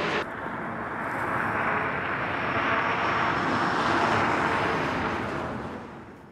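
An aircraft flying overhead: a rushing noise that swells over the first few seconds and fades away near the end.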